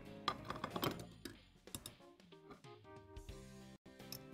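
Faint background music with held notes, with a few light clicks and clinks of metal tongs against a glass baking dish and a plate as a piece of chicken is served.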